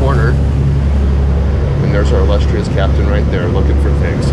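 Steady low drone of a fishing boat's engines under way, heard on the bridge, with indistinct voices over it from about halfway through.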